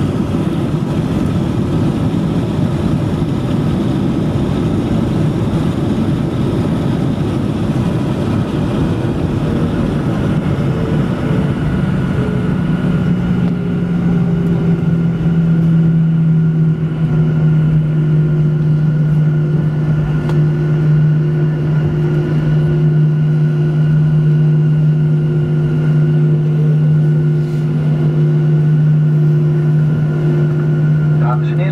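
Boeing 737-900 jet engines and airframe heard from the cabin over the wing during the landing rollout: a heavy roar as the aircraft decelerates on the runway, easing after about ten seconds into a steady engine hum at idle as it slows to taxi.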